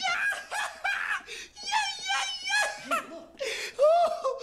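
Loud human laughter in rapid, repeated bursts, with some vocalising mixed in.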